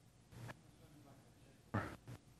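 A quiet pause in a man's speech, with one faint short sound about half a second in; his voice starts a word again near the end.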